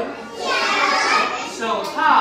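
A class of young children's voices chanting together in chorus, many voices overlapping.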